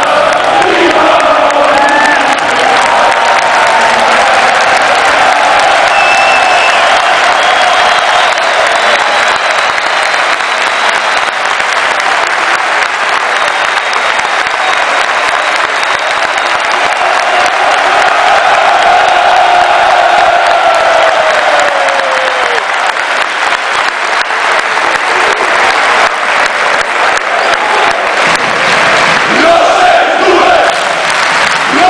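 Continuous loud noise of a packed basketball arena crowd cheering and chanting. Massed voices hold a long drawn-out call that falls in pitch about two-thirds of the way through.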